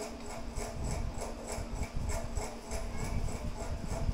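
A plastic garlic-salt shaker being shaken and tapped over a bowl of flour, giving irregular soft knocks.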